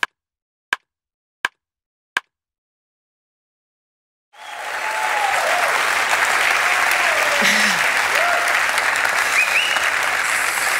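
Four sharp clicks, evenly spaced about three quarters of a second apart, then a pause, then audience applause that starts about four seconds in and holds steady, with a few voices calling out over it.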